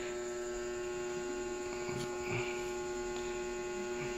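A steady electrical hum at one pitch with its overtones, and a faint click about two seconds in.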